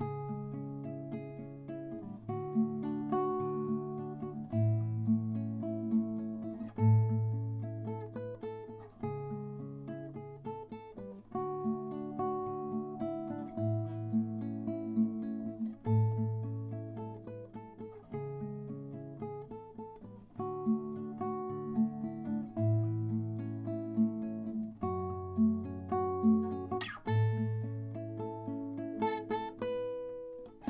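Solo nylon-string classical guitar fingerpicking a slow prelude: bass notes changing about every two seconds under repeating arpeggiated chords, with a sharper, brighter chord attack near the end.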